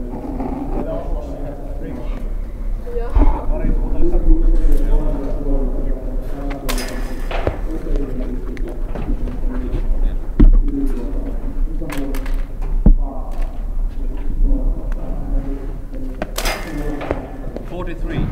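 Voices talking, with a handful of sharp thuds spaced through it: the impacts of medicine balls thrown overhead, hitting the floor or landing.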